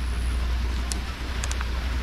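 Wind rumbling on the microphone by the water, with a few faint clicks about a second in and again shortly after.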